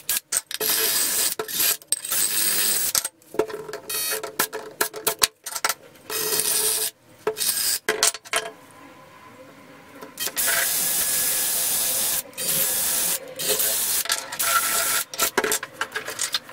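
Makita cordless drill spinning a small brass wire wheel against the lantern's metal parts, brushing the metal clean in repeated bursts that start and stop abruptly. The bursts last from a moment to about two seconds, with a quieter break near the middle.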